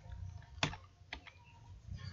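A few scattered keystrokes on a computer keyboard as code is typed, the loudest a little over half a second in.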